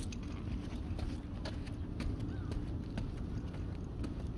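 Small dogs' claws clicking on wooden boardwalk planks as they trot on leash, irregular taps several a second. A steady low wind rumble on the microphone runs underneath.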